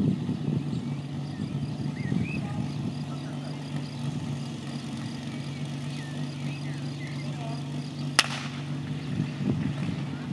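Small engine of a portable fire pump idling steadily, with one sharp crack about eight seconds in.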